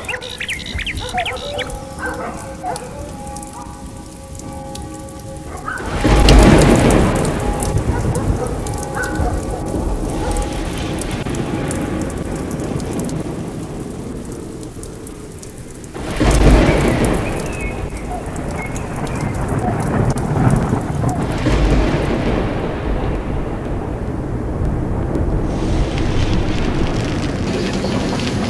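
A steady, hissing noise with two loud rumbling swells, about six and sixteen seconds in, each dying away over several seconds; faint steady tones sound in the first few seconds.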